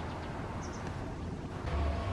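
Steady low outdoor rumble with a brief, high double chirp from a small bird about two-thirds of a second in. Near the end the rumble grows louder.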